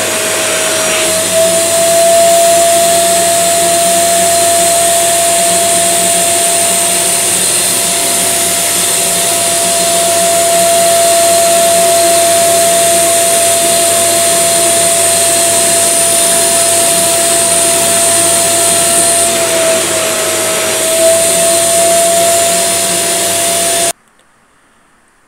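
Upholstery spray-extraction cleaner's suction motor running steadily with a loud, high whine as its nozzle is drawn over a fabric sofa, pulling out the cleaning solution. The whine's pitch dips briefly near the end and then recovers.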